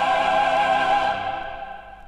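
Classical Christmas carol music: voices singing with vibrato over orchestral accompaniment, holding a final chord. The chord is released about a second in and dies away in the reverberation, ending the piece.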